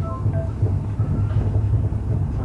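Express train running at speed, heard from inside a passenger coach: a steady low rumble of the wheels on the rails.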